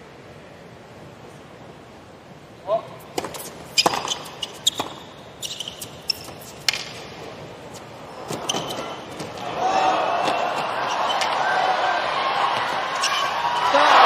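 Tennis ball struck back and forth with racquets in a rally on a hard court: a string of sharp pops from about three seconds in. In the second half a stadium crowd's noise swells and keeps rising to the end as the point goes on.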